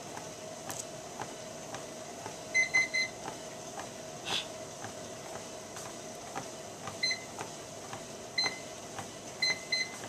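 Life Fitness treadmill running at walking speed: a steady motor whine with regular footfalls on the belt about twice a second. The console beeps as its buttons are pressed, three quick beeps about two and a half seconds in and a few more near the end.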